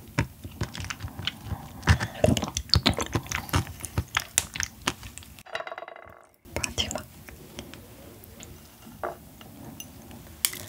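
Close-miked wet chewing and lip smacking on soft, fatty yellow stingray liver, with chopsticks clicking against the plate as the next piece is cut. The sound drops out for about a second a little past halfway, then the clicks and smacks come more sparsely.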